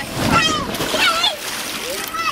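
Water splashing as a child slides down a wet inflatable water slide into a paddling pool, with children's high voices calling out over it.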